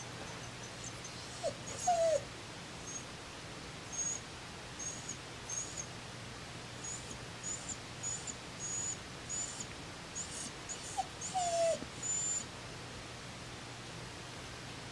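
A dog whining softly, a string of short high-pitched squeaks throughout, with two longer falling whimpers, one about two seconds in and one near the end.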